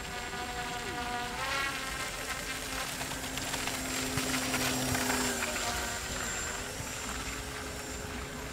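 Motor of a radio-controlled hydrofoil boat whining as it runs across the water, its pitch rising about a second and a half in and then holding steady.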